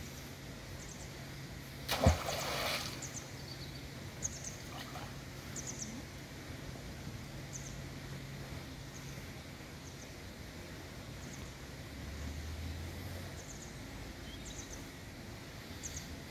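Outdoor ambience with faint small-bird chirps coming and going and a steady low hum; about two seconds in, a single sudden knock followed by a short rush of noise, the loudest sound.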